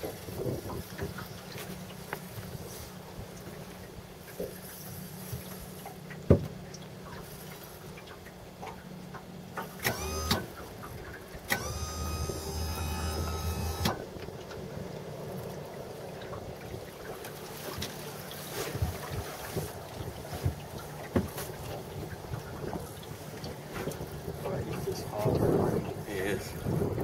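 Steady low wind rumble over the water around a boat, broken about ten seconds in by a short whine and a little later by a second whine lasting two or three seconds.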